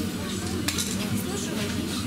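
Shop background: indistinct voices over a steady low hum, with one light click a little under a second in.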